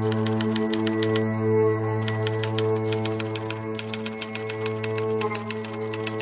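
Background music: sustained held chords under a fast, even ticking beat of about eight ticks a second, with a break in the ticking for about a second near the start.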